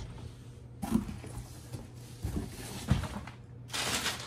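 Handling sounds of a cardboard gift box: a few soft knocks, then a papery rustle starting near the end as the box is opened.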